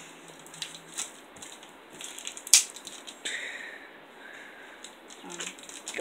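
Foil Pokémon card booster pack crinkling and tearing as it is worked open by hand, with scattered crackles and one sharp snap about two and a half seconds in.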